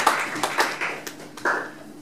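Small audience clapping, dying away over the first second or so, with a single brief, sharper sound about one and a half seconds in.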